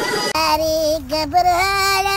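Guitar music cuts off abruptly just after the start, and a high voice, child-like, starts singing a short tune in a few held, stepping notes with no clear accompaniment.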